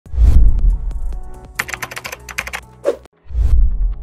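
Intro sound effects over a title animation: a deep bass hit, then a quick irregular run of sharp clicks like keyboard typing, and a second bass hit near the end.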